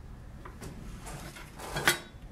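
Faint handling of clay on the armature, then a short sharp clatter near the end as a small sculpting tool is set down on the wooden stand.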